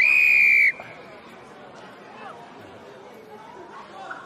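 Rugby referee's whistle: one loud, sharp blast lasting under a second and falling slightly in pitch as it ends, blown to award a penalty. Faint player shouts and crowd chatter follow.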